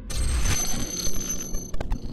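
Electronic logo sting: a sudden synthesized hit with a steady high ringing tone, breaking into a few glitchy stutters near the end.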